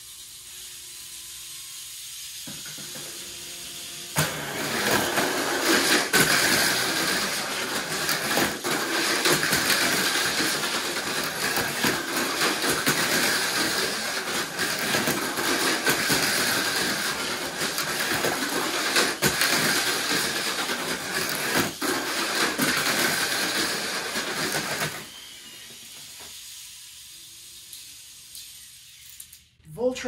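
Two Tamiya Mini 4WD cars racing around a plastic multi-lane track: a dense whir of small electric motors and gears with constant rattling and clicking of rollers and chassis against the track walls. It starts suddenly about four seconds in and stops about twenty-five seconds in, a six-lap race.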